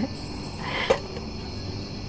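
Steady high chirring of crickets, with a brief rustle and a single sharp click about a second in.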